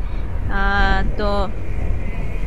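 Steady low road and engine rumble inside a moving Toyota car's cabin. A woman's voice is heard briefly twice, about half a second and a second in.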